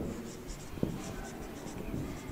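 Marker pen writing on a whiteboard: a run of short, high scratchy strokes as letters are formed, with one sharper knock of the pen on the board just under a second in.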